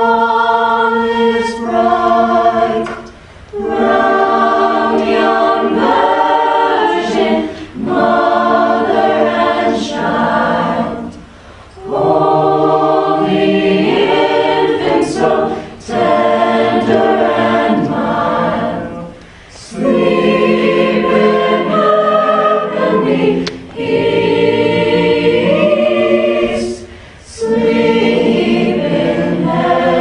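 An a cappella vocal group singing in harmony with no instruments, in phrases of about three to four seconds separated by short breaks for breath.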